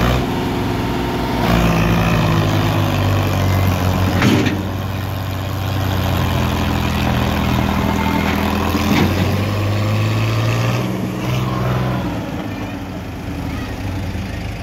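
Sonalika DI 50 tractor's diesel engine running hard under heavy load as it pulls a loaded trolley out of soft soil, its note shifting in pitch a couple of times. Two short sharp noises come about four and nine seconds in.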